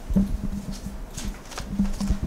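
Irregular series of dull knocks and bumps close to a lectern microphone, with brief rustles, as papers and hands are handled at the podium.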